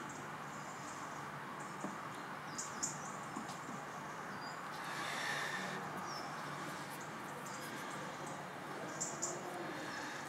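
Small birds chirping faintly now and then, short high chirps, over a steady background hiss, with a few light ticks.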